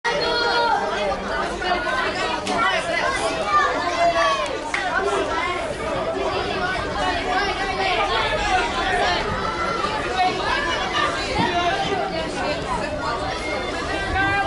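Chatter of many voices talking and calling out over one another in a continuous babble.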